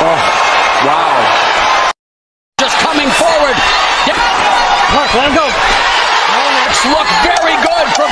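Loud arena crowd noise during a boxing bout, a dense roar of many voices with shouts rising and falling. The sound cuts out completely for well under a second about two seconds in, then resumes.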